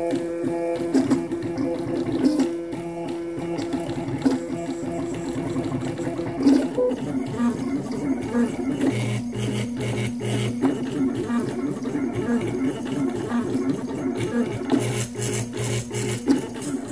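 Desktop 3D printer's stepper motors whining as the print head moves in short back-and-forth strokes, the pitch changing with each move.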